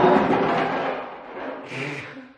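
A kitchen drawer coming down: a sudden knock and a clatter that dies away over about a second and a half. The drawer was not fitted securely.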